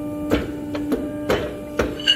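A steel tube knocking against the steel die and bed of a bending press three times, about a second apart and then half a second apart, over a steady machine hum.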